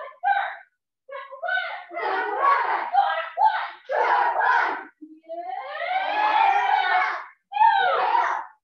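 A class of martial arts students shouting together in short bursts, followed by one long drawn-out group yell about five seconds in.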